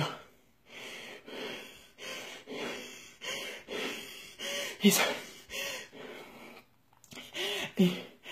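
A woman imitating laboured breathing: a string of quick, noisy gasping breaths in and out, about two a second, acting out horses too exhausted to catch their breath.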